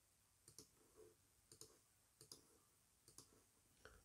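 Faint computer mouse clicks over near silence: about nine scattered clicks, several in quick pairs.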